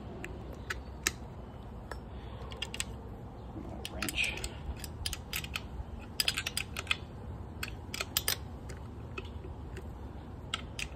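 Sharp metal clicks from a wrench on the distributor hold-down bolt, coming in quick runs about six seconds in and again around eight seconds. The bolt is being snugged only enough to hold the distributor while leaving it free to turn for setting the timing.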